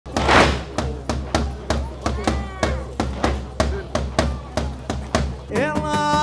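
A large bass drum beaten in a steady pulse, about three strokes a second, the first stroke the loudest. Near the end, a Cretan folk band's melody instruments come in over the beat.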